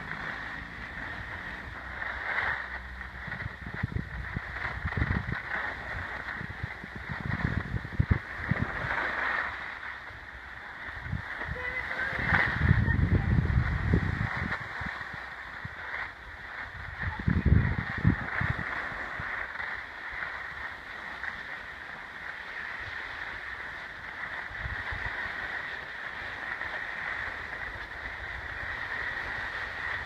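Skis hissing and scraping over packed snow during a downhill run, with wind rumbling on the microphone in gusts, loudest twice in the middle.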